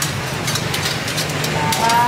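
Busy food-stall room ambience: a steady low hum with scattered clicks and clatter, and a short rising voice-like call near the end.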